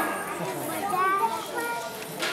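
Young children's voices chattering, with a high child's voice standing out about a second in.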